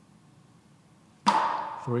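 A single hard drumstick strike on the rim of an electronic kit's snare pad about a second and a quarter in: a sharp crack that rings down over about half a second. It is the third of five hard rim hits made so the drum module can capture the pad's crosstalk.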